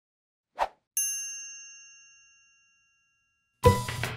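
Logo chime sound effect: a short burst, then a single bright bell-like ding about a second in that rings and fades over about a second and a half. A music track starts just before the end.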